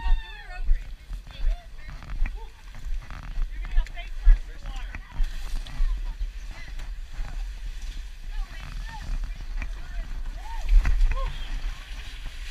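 Low, uneven rumble and knocks from a body-worn action camera being jostled as its wearer climbs into a pipe. Scattered short calls and voices of other people come through at the same time.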